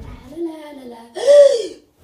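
A boy crying out in fright: a short wavering, falling voice sound, then a loud high scream lasting about half a second, a little past the middle.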